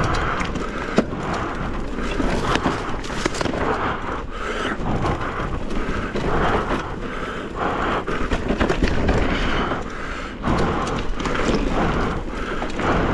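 Mountain bike tyres rolling over a rocky, gravelly singletrack, with a constant crunch of stones and many small clicks and knocks as the bike rattles over the rough ground, over a steady low rumble of wind on the microphone.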